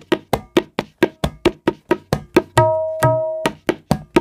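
Tabla played at a moderate practice tempo: a fast run of short, dry, damped strokes, about seven a second, typical of tirakita, then ringing open strokes with the bass drum's resonance about two and a half seconds in, then dry strokes again near the end.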